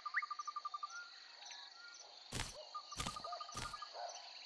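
Faint cartoon nature ambience: a steady insect chirring with regularly repeating cricket chirps, a fast trill, and a few short rising bird chirps. Three short soft thumps fall in the second half.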